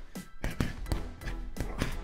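Boxing gloves striking a hanging heavy punching bag several times in quick succession, short sharp impacts, over background music.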